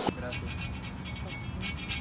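Crêpe cooking on a hot round crêpe griddle: a quiet, rapid crackling as the batter cooks.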